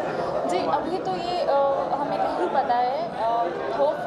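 Speech only: a woman talking over the chatter of other people in a crowded room.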